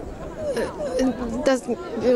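Mostly a pause in a woman's speech, filled with the faint chatter of passers-by and outdoor city hubbub; she says one short word near the end.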